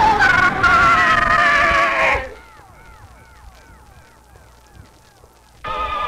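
Cartoon soundtrack: loud, sustained, slightly wavering pitched tones for about two seconds. They cut to a quiet run of short chirps that rise and fall about three times a second, then turn loud again just before the end.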